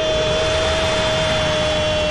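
A sports commentator's voice holding one long, steady shouted note over a stadium crowd cheering a goal.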